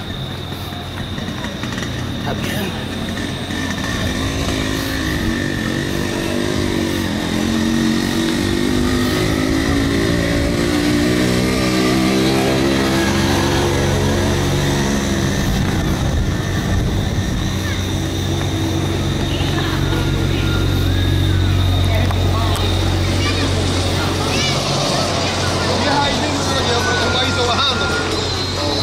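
Street traffic: a vehicle engine passes close by, its pitch rising and then falling over several seconds, followed by a steady low engine drone. Voices can be heard in the background.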